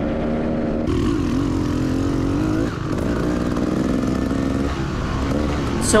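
Beta Xtrainer 300 two-stroke dirt bike engine running under way on a trail, its revs rising and falling unevenly. The rider blames this on its gearing, too jerky in second and too loose in third.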